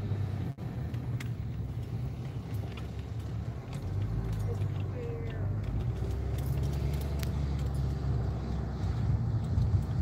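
Mercedes-Benz car driving along a street, its engine and tyre noise heard from inside the cabin as a steady low hum, with scattered small clicks and rattles. The sound cuts out very briefly about half a second in.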